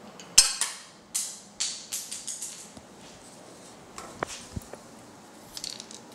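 Hard clicks and clatters as the metal and plastic parts of a tablet stand's pole collar and ball-jointed arm are handled, knocked together and set down on a countertop. A sharp knock about half a second in is the loudest. Several fading clatters follow over the next two seconds, and a few lighter clicks come later.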